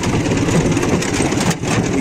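Dnepr MT-11 sidecar motorcycle's flat-twin engine running steadily as the bike rides off-road over rough grassy ground, heard close up from the sidecar.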